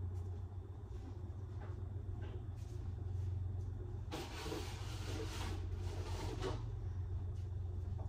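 A steady low hum, with a couple of seconds of hissing noise starting about halfway through.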